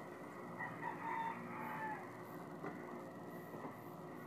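Faint background room noise with a low steady hum and a few faint short chirps.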